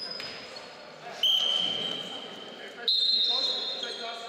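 Basketball court sounds in a gym: two sudden ringing tones about a second and a half apart, each fading over a second or so, the second slightly higher, with players' voices in the hall.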